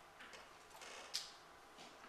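Quiet room tone with one short, sharp click a little over a second in.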